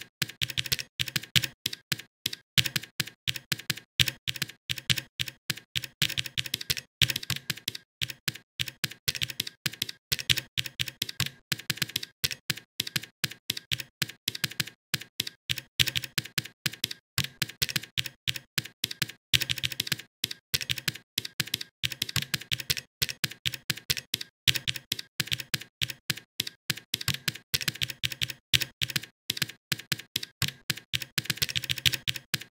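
Fast, steady typing on a computer keyboard, several keystrokes a second with a few brief pauses.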